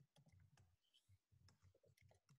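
Near silence, with faint irregular clicks.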